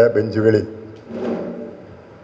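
A man speaking Malayalam into a microphone, breaking off about half a second in. A short, soft breathy sound follows about a second in, then a pause.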